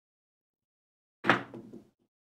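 A pair of dice landing on a craps table: one sharp knock about a second in, then a brief clatter as they tumble and come to rest.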